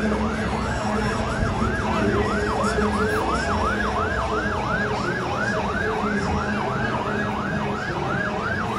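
Electronic siren on a fast yelp setting, its pitch sweeping up and down about three times a second without a break.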